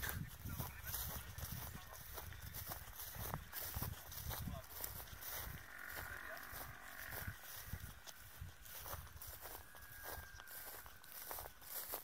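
Faint voices talking at a distance from the microphone, over an uneven low rumble of wind on the microphone.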